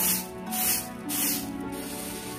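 Dry black lentils swishing and rattling in a bamboo winnowing tray as it is shaken and tossed, in three short swishes at an even pace that stop shortly before the end, over background music.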